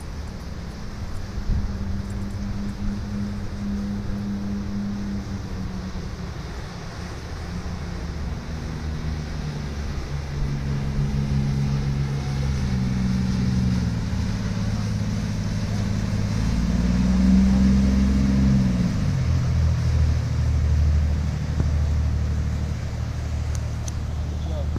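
The diesel engines of a US Coast Guard 47-foot motor lifeboat running steadily as it comes in close through the surf. The engine grows louder to its peak about three quarters of the way in, then drops in pitch as the boat goes by. The wash of breaking waves goes on underneath.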